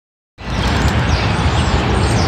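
Steady outdoor street noise with a low rumble, cutting in about a third of a second in.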